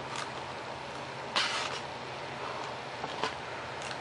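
Steady low room hum and hiss, with a few soft handling noises from a foam model plane being turned in the hands, the clearest a short rustle about 1.4 s in.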